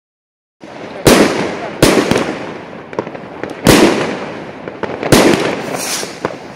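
Aerial fireworks bursting overhead, starting about half a second in: four loud bangs a second or two apart, with smaller pops and a steady crackle between them.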